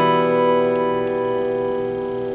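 An open E minor chord on an acoustic guitar, strummed once just before, ringing on and slowly fading.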